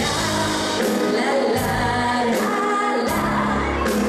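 Live pop band playing: women singing over electric guitar and bass guitar, with a regular beat about every 0.8 seconds.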